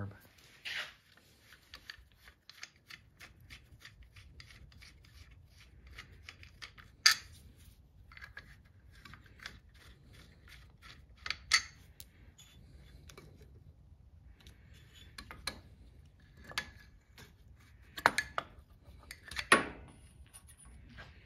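Metal hand tool clicking and scraping against the carburetor of a Chinese 125 cc ATV engine as the carb is worked loose. There are light irregular clicks throughout, with a few sharper knocks about seven and eleven seconds in and twice near the end.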